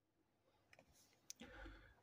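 Near silence with a few faint clicks, the clearest about a second and a half in, followed by a faint low rustle.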